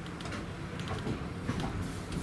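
Interior noise of a Class 317 electric multiple unit: a steady low hum with a few light clicks and rattles.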